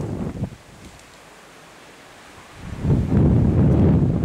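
Wind buffeting the camera microphone as a low rumble. It dies away within the first half second, leaves a lull, then returns as a louder gust about two and a half seconds in.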